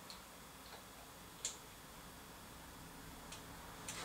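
A handful of short, sharp clicks over a quiet background, the loudest about a second and a half in: small metal parts being handled on a stopped Lister D engine.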